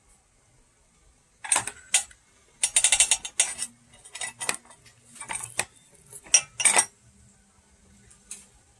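A metal spoon scraping and clinking against a glass bowl and a metal kettle as soft palm sugar is scooped out. The sounds come as half a dozen short groups of clinks and scrapes with quiet gaps between them.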